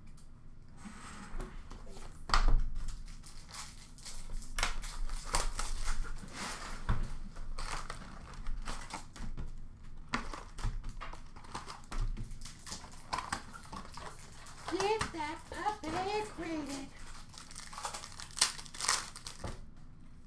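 Hockey card pack wrappers crinkling and rustling as packs are torn open and the cards are handled, in a run of short, irregular crackles. A faint voice is heard about 15 seconds in.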